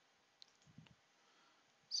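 A faint computer-mouse click about half a second in, followed by a soft low thump and a few small ticks, over near-silent room tone.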